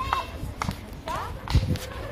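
Footsteps of a person walking at an unhurried pace on an asphalt path, with a heavier low step about one and a half seconds in. Faint voices of people talking in the background.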